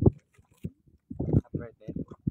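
Speech: a person talking in short phrases with pauses between.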